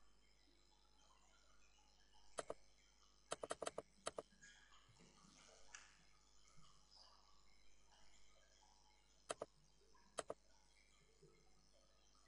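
Computer mouse button clicks in near silence: a double click about two seconds in, a quick run of about five clicks a second later and one more just after, then two further double clicks near the end.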